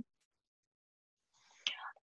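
Near silence in a pause between sentences, then a short, faint breath taken in near the end, just before the speaker talks again.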